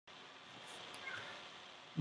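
Faint room tone: a low, even hiss from the recording, with a slight swell about a second in.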